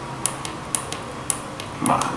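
A few faint, sharp clicks at uneven intervals against steady background noise.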